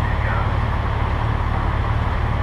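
A steady low engine rumble with a fine, even pulse, over faint street noise.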